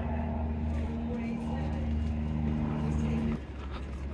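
A motor vehicle engine running steadily in the street, a low hum with a constant pitch that cuts off suddenly about three and a half seconds in, over a general street rumble.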